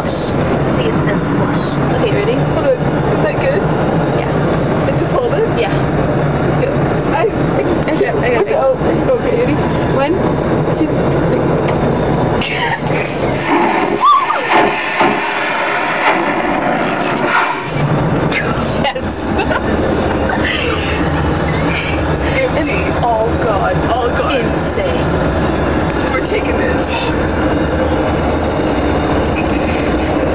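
Airliner vacuum toilet flushing with a loud rushing whoosh for a few seconds about midway, its suction drawing on toilet paper from a roll held in the bowl, over the steady low drone of the aircraft cabin in flight.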